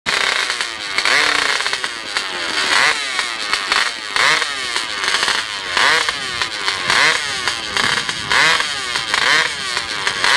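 Competition hillclimb dirt bike's engine revved in repeated blips, each rising sharply and dropping back, about one every second or so.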